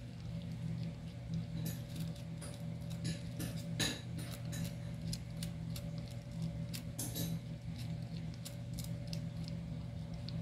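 A kitten chewing and crunching on pieces of fish, making irregular small clicks and crunches that come thickest about four and seven seconds in. A steady low hum runs underneath.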